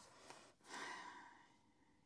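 A soft exhaled breath, a sigh, swelling about half a second in and fading away over the next second, against near silence.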